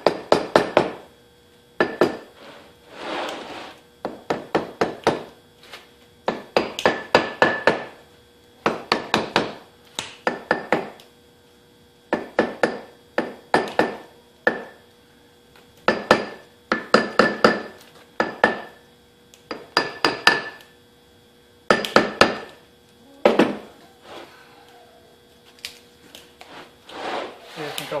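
A metal rod rapping a match plate pattern set in a wooden sand-casting flask, in quick bursts of several sharp taps repeated every second or two. The rapping loosens the pattern from the packed sand so it can be drawn out of the mold cleanly.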